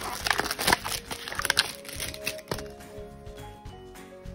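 Clear plastic candy tray crackling and clicking as a hand takes a giant gummy out, a quick run of sharp crackles through the first second and a half, over background music that carries on alone with steady held notes after that.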